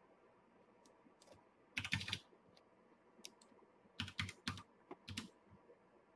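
Computer keyboard keys tapped in short bursts: a quick cluster of keystrokes about two seconds in, then a run of several more near the end.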